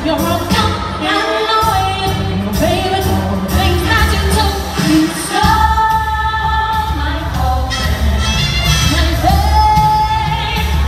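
A woman singing lead into a microphone over amplified backing music with a steady bass line. She holds a long note about halfway through and another near the end.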